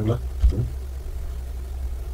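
A steady low hum in the background, with a brief fragment of a man's voice right at the start and again about half a second in.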